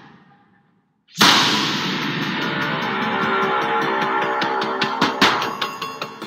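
Horror-film teaser soundtrack: the music fades to silence, then a sudden loud impact hit about a second in rings out into a sustained drone. A few more sharp hits come near the end.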